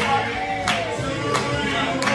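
Restaurant staff singing a birthday song together in a group and clapping in time, about three claps every two seconds.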